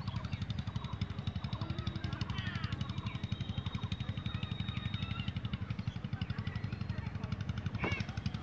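A steady low background hum, pulsing rapidly and evenly, with faint distant voices over it.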